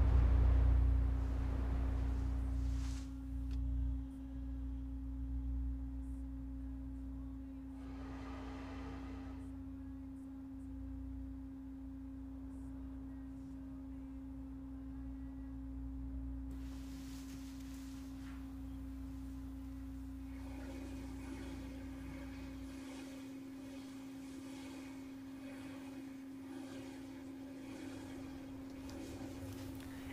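Distant low rumble of the New Shepard rocket's BE-3 engine, strongest at first, then weaker and dropping away about 23 seconds in. A steady hum at one pitch runs under it throughout.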